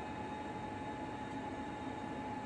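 Steady hum and hiss of the International Space Station's cabin ventilation fans and equipment, with a constant whine running through it.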